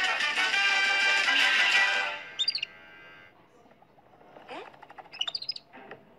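Cartoon score music that cuts off abruptly about two seconds in, followed by a few short, high chirping sound effects and rising squeaky glides.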